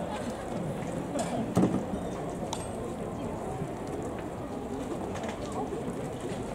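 Open-air stadium ambience: a low murmur of distant voices, with a brief louder sound about a second and a half in.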